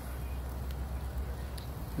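Steady outdoor background noise: a low rumble under a faint even hiss, with no distinct event.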